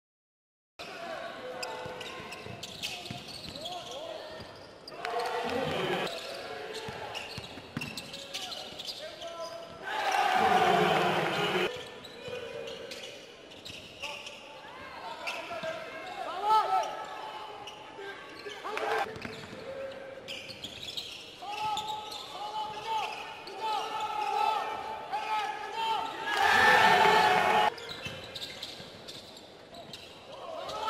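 Live court sound of a basketball game: a ball bouncing on the hardwood and shoes squeaking, starting about a second in, with two louder bursts of noise about ten seconds in and near the end.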